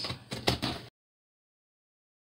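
Scissors cutting the packing tape on a cardboard shipping box, with a short hiss and a few sharp clicks and scrapes. About a second in the sound cuts off abruptly to dead silence.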